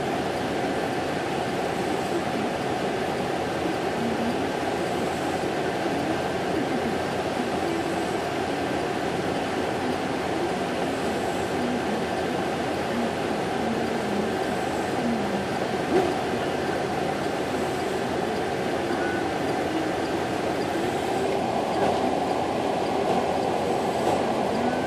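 Steady diesel drone of a self-propelled modular transporter's power pack running, with a single brief knock about two-thirds of the way through.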